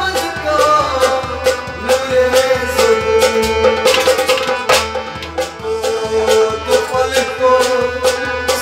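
Live music: a harmonium holding sustained notes over regular percussion strokes, with a male voice singing at times.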